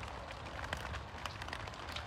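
Quiet background noise: a low steady rumble with a faint hiss and a few soft ticks.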